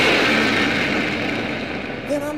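A noisy wash of sound slowly fading: the tail of an electric guitar imitating a revving motorcycle in a rock recording.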